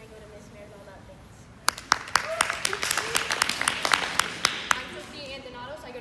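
A small audience applauding, with sharp individual claps, starting about two seconds in and lasting about three seconds.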